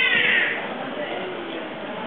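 A short high-pitched cry that falls in pitch and fades about half a second in, followed by faint background murmur.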